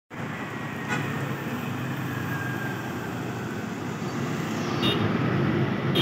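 Diesel engine of an Iveco Euromidi CC150 bus running as it approaches along the street among other traffic, a steady low rumble that grows louder toward the end. Two brief sharp sounds stand out, about a second in and near the end.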